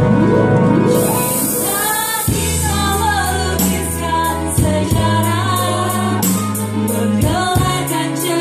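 Women singing together into microphones, accompanied on a Yamaha electronic keyboard. A steady bass line comes in about two seconds in, with a regular beat.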